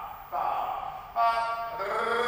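A person's voice vocalising in drawn-out, held syllables, broken by short gaps about every half second to a second.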